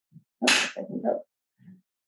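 A brief mouth sound from a woman lecturer between sentences: a sharp breathy onset about half a second in, followed by a short, low murmured sound.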